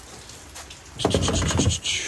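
Steady patter of heavy rain, then about a second in a louder burst of rustling and clattering as tools in a bin are shifted by hand.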